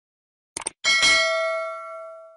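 Subscribe-button animation sound effect: a quick double click about half a second in, then a single bright bell ding that rings on and fades away.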